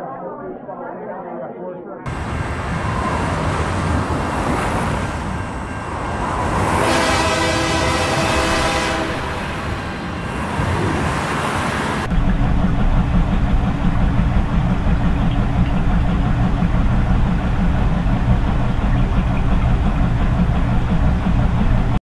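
An echoing murmur of chattering voices for the first two seconds, then a sudden change to a loud rushing noise with a held tone of several pitches lasting about three seconds. About halfway it cuts abruptly to the steady low rumble of laundromat washing machines and dryers running.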